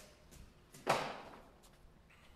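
A single short knock about a second in, fading away quickly.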